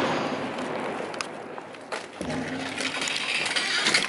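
Echo and rumble of an explosive door-breaching charge dying away, fading over about two seconds. A second, lower rush of noise follows about two seconds in.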